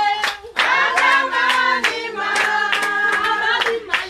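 A group of people singing together, with hand claps.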